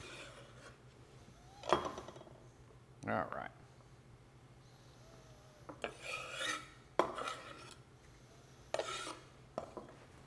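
A chef's knife on a wooden cutting board cutting green olives: a short scraping stroke, then a few separate sharp taps of the blade on the board.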